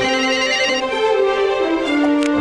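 Music with a mobile phone's trilling electronic ringtone over it, which stops after under a second.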